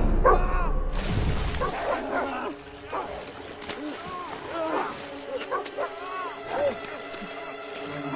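Water splashing as a man thrashes about in it, with many short cries that rise and fall in pitch. A loud low rumble fades away in the first two seconds.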